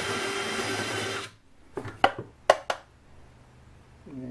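Cordless drill with a step bit running briefly to touch up a hole in a wooden plate, cutting off suddenly after about a second; a few sharp clicks and knocks follow.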